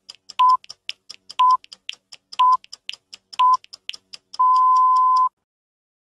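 Countdown-style intro sound effect: a short high beep once a second, four times, then one longer beep of about a second. Sharp irregular clicks like old-film crackle run between the beeps.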